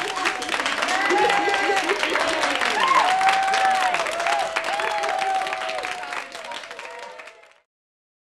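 Theatre audience applauding at the end of a song, with voices calling out over the clapping; it fades out about seven and a half seconds in.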